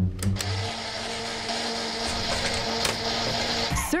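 A steady electric whirring hum with a low buzzing tone from a just-wired ceiling fan. It starts after a short thump and cuts off suddenly shortly before the end.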